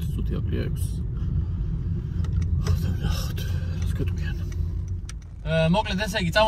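Steady low rumble of a car heard from inside its cabin, with a few faint clicks. A man's voice starts near the end.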